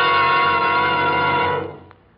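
Orchestral music cue: a loud chord held steady, then fading out about a second and a half in.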